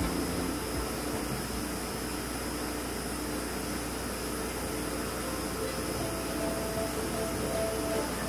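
Steady outdoor noise hiss with faint held musical notes under it.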